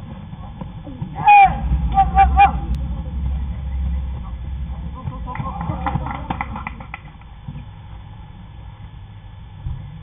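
Ballplayers shouting across an outdoor baseball field. There is one loud call about a second in, then a few short repeated calls, and more shouting about halfway through as a run comes in to score.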